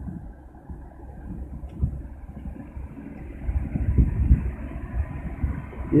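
Wind buffeting an outdoor handheld microphone: an uneven low rumble that rises and falls, swelling somewhat after the midpoint.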